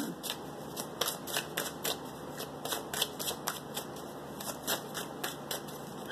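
A tarot deck being shuffled by hand: an irregular run of light card clicks and flicks, several a second.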